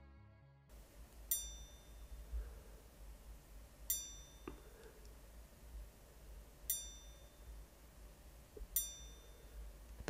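MeisterSinger Bell Hora hour chime: a small hammer in the watch's bell module strikes the sound fork behind the dial, giving one bright ring each time the single hand is wound past an hour with the crown. Four single strikes, two to three seconds apart, each ringing briefly.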